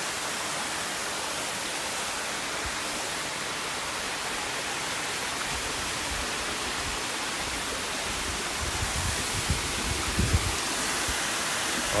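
Steady rushing of water from a partly frozen waterfall, with a few low thumps in the last few seconds.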